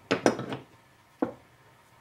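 A small metal square being handled and set on wooden scrap blocks: a few light metal-on-wood clinks and knocks, two close together at the start and one more just past a second in.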